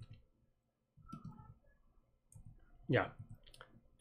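A few faint clicks of computer keyboard keys as a number is edited in the code.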